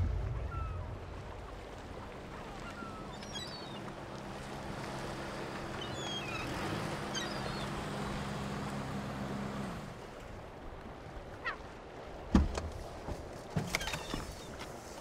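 Pickup truck engine running at low speed, a steady low hum that fades out about ten seconds in, with faint bird calls over an open harbour background. About twelve seconds in comes a sharp thump, followed by a few lighter knocks.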